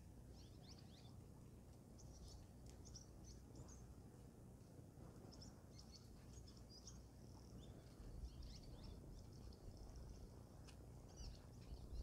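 Faint, quick high chirps and calls of small birds, many through the whole stretch, over a low steady outdoor rumble.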